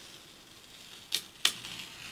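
Masking tape being peeled off drawing paper: a faint rasp, with two sharp clicks about a third of a second apart just over a second in.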